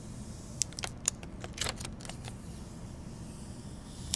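Clear plastic protective film being peeled off a new iPhone 8: a scattering of short, light crackles and clicks in the first half.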